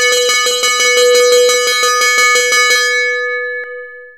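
School bell rung rapidly, about six strokes a second, signalling the end of class. The strokes stop near three seconds and the bell rings on, with one last single stroke shortly before the end.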